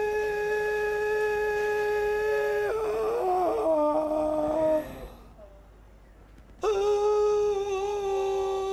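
A man intoning long sustained notes in a mock-mystical chant. One long steady note is held, then breaks into a few short wavering lower notes, then stops. About two seconds later a second long note starts at the same pitch.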